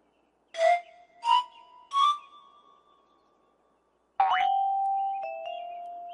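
Gentle soundtrack music: three short chime-like notes climbing in pitch, then after a pause a bell-like note struck about four seconds in that rings on and slowly fades, joined by a second tone.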